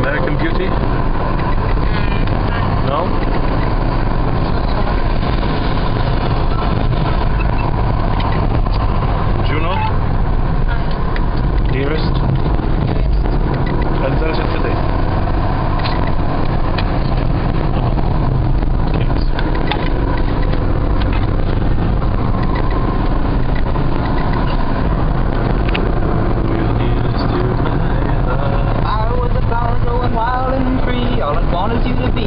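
Steady engine and road noise of a car heard from inside its cabin as it drives along. A voice comes in near the end.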